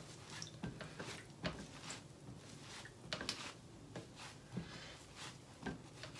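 A sponge pressed onto wet paper pulp on a screen to push the water out: faint, irregular soft handling sounds and small knocks.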